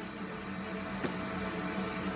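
Steady low hum of indoor room background, with one faint click about halfway through.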